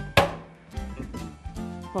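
A single sharp knock from a countertop rotisserie oven as a hand finishes with it, just after the start, over faint background music.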